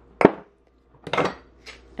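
Glass mason jars clinking and knocking against each other in a drawer as one jar is set back and another lifted out: one sharp clink about a quarter second in, then a short rattle of knocks just after a second.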